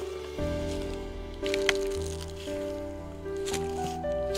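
Background music: sustained chords over a bass line, the notes changing about once a second.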